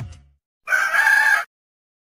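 A rooster crows once, a short crow of under a second that cuts off sharply.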